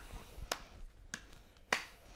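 Three quiet, sharp clicks about half a second apart, with a softer one at the start.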